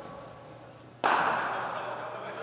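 Cricket bat striking the ball once, about halfway through: a sharp crack that rings on in the hall's echo.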